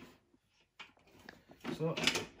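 A few faint clicks and taps from a baby swing's plastic base and leg tubes being handled during assembly, then a voice speaking briefly near the end.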